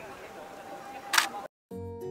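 Nikon D850 DSLR's shutter and mirror firing once, a single sharp click a little past a second in. After a brief silent cut, background music starts near the end.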